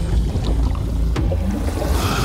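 Animated-film sound effect of a small car ploughing through water: a steady rush and slosh of water over a low rumble as the car settles into the harbour, with a short click a little over a second in.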